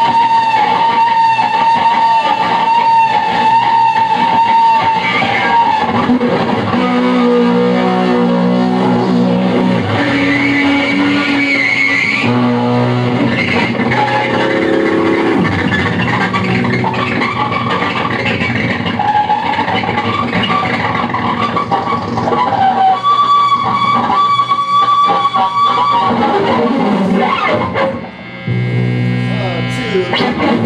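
Live rock band with electric guitar playing long, held, wavering notes, with a short drop in loudness near the end.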